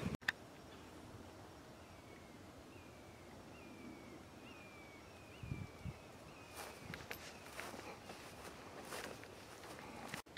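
Faint outdoor sound: a bird calls a series of short falling whistled notes, about two a second, for several seconds. From about halfway in, faint irregular footsteps on a grassy trail take over.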